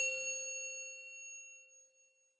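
A single bell-like metallic ding, struck once, its several ringing tones fading away over about two seconds, as an intro sound effect for a title reveal.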